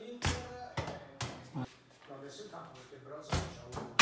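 A handful of sharp knocks from a small ball being kicked and bouncing on a tiled hallway floor, the strongest about three and a half seconds in.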